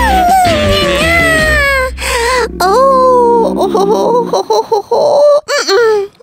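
A cartoon character's high, wordless voice: long, delighted gliding vocal sounds over background music. About four seconds in the music drops away and the voice breaks into a short, wavering whimper.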